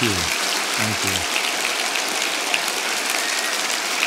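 Large audience applauding steadily, a dense even clatter of many hands clapping without letting up.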